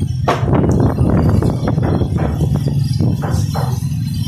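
Strong wind rumbling on the phone's microphone, with rain tapping irregularly on a metal roof over it.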